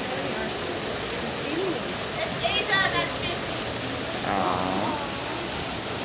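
Steady rushing splash of a small artificial waterfall pouring into a pool, with a few brief voices over it.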